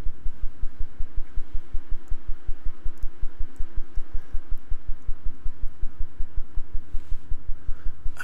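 A low, even throbbing pulse repeating about six times a second, with a faint steady hum over it through the middle and a few faint clicks.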